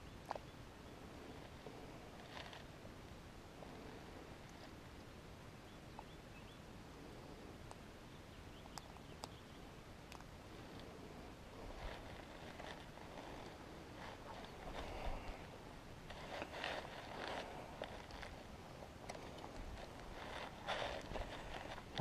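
Faint small clicks of gear being handled, then footsteps swishing through tall grass, growing louder over the last ten seconds.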